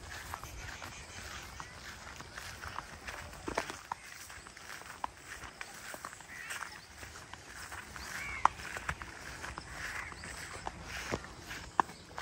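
Footsteps through tall grass, with the rustle of grass and palm fronds brushed aside while walking, and scattered sharp clicks and snaps. A few short chirps, likely birds, come in the middle.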